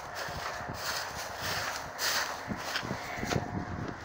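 Footsteps through dry grass and matted reeds, with the stalks rustling and crackling underfoot in an irregular run of steps.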